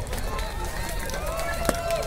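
Concrete paving stones clacking against one another as they are picked up and set down by hand, with one sharp clack near the end. Voices talking underneath.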